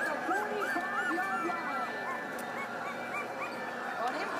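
A small dog whining, a string of short whimpers that each rise and fall in pitch, several a second.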